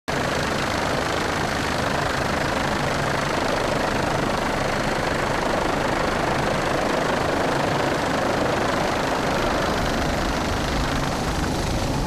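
Steady engine and rotor noise from a helicopter filming from the air, a constant rushing noise with a low hum underneath.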